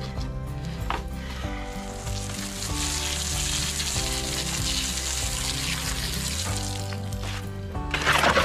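Garden-hose spray nozzle spraying water into a wheelbarrow of dry cement mix: a steady hiss from about two seconds in until near the end, over background music.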